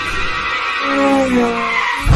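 Cartoon soundtrack: a steady high tone underneath, and from about a second in a pitched sound that slides downward for about a second.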